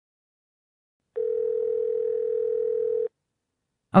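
A single steady electronic beep tone, held for about two seconds and starting about a second in, of the kind heard from a telephone.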